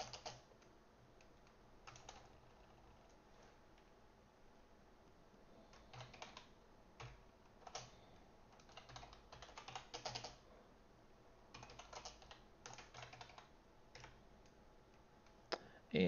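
Faint typing on a computer keyboard: keystrokes come in short irregular bursts with pauses between them.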